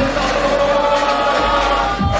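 Electronic dance music from a club DJ set played loud over the PA, at a breakdown: held, choir-like tones with the kick drum and bass dropped out. The beat comes back in at the very end.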